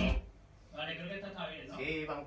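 Music with guitar stops abruptly just after the start. Then a man's voice talks quietly.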